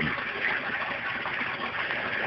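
Steady hiss of water running in an aquaponics system.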